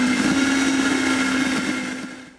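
Countertop blender motor running at a steady high speed, whirring with a constant whine as it blends a jar of green smoothie; the sound fades away near the end.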